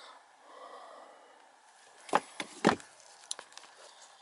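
Quiet room tone broken about two seconds in by three sharp knocks in quick succession, followed by a few faint ticks.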